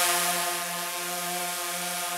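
DJI Phantom 3 Advanced quadcopter, laden with a strapped-on flashlight, hovering and climbing with its propellers giving a steady buzzing hum that fades a little during the first second as it rises away.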